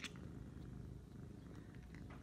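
A domestic cat making a low, steady, purr-like rumble, with a few faint clicks near the end.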